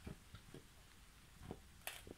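Large Rottweiler-mastiff-coonhound mix dog licking and mouthing a frozen whole raw chicken carcass: a few faint, soft wet knocks and one sharp click near the end.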